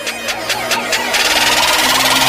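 Electronic intro music building up: a quick rhythmic pulse, then a rush of noise swells in about halfway through and grows louder.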